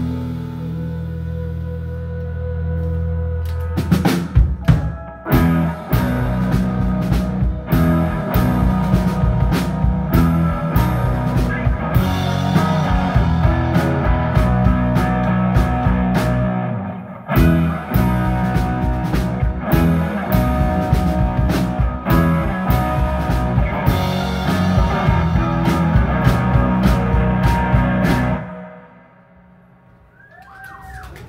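Live indie rock band playing an instrumental passage on electric guitars, keyboard and drum kit. A held chord rings for the first few seconds, then the drums come in and the full band plays on, and the song stops abruptly near the end.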